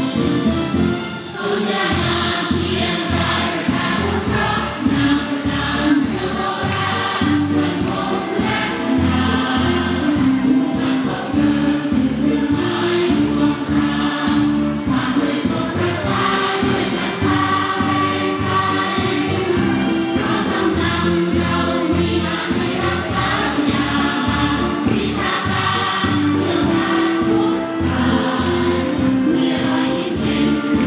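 A choir singing a march song over music with a steady beat.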